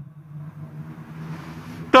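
A quiet pause in a church's chanted consecration prayer: faint room noise with a low steady hum. A man's chanting voice comes back at the very end.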